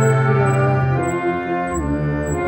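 Slow music on an old, out-of-tune pampa piano: a low note held underneath while a higher melody line slides up and down between pitches.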